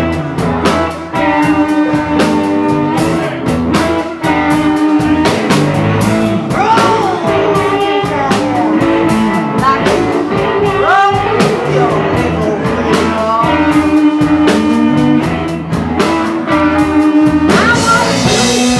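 Live blues-rock band playing: a female lead vocal over electric guitars, bass guitar, a drum kit and a harmonica, all loud and steady with a regular drum beat.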